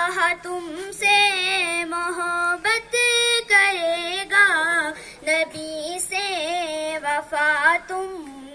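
A child's high solo voice singing a hamd, an Urdu hymn praising God: long, drawn-out melismatic phrases that waver in pitch, broken by short breaths about once a second.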